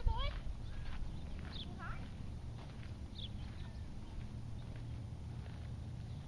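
A brief, high voice-like call near the start, then a steady low rumble with a few short, high chirps.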